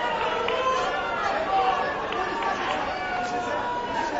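Fight crowd and cornermen shouting over one another: many overlapping voices at a steady level.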